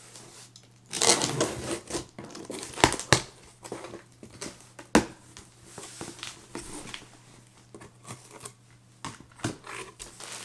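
A cardboard shipping box being opened by hand: packing tape ripping about a second in, then the cardboard flaps and contents rustling and crinkling, with a few sharp knocks.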